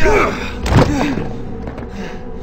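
Two heavy blows landing in a fistfight, about three-quarters of a second apart, each followed by a pained grunt, over a steady background music score.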